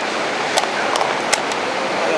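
A blitz chess move: sharp clacks of a plastic chess piece being set down on a wooden board and the game clock being pressed, two clear clicks about half a second apart from a second later, over steady street noise.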